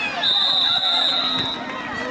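Referee's whistle blown once, a steady high tone lasting just over a second, blowing the play dead after a fumble, over crowd chatter.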